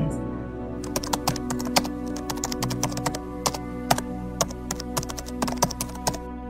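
Keyboard typing sound effect: a quick, irregular run of clicks that starts about a second in and stops at the end, as text is typed onto the screen. Soft ambient music with long held tones plays underneath.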